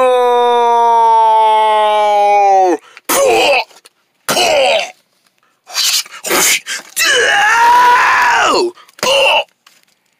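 A person's voice doing character cries: one long held note that sags and breaks off about three seconds in, then several short cries and one long yell that rises and falls in pitch.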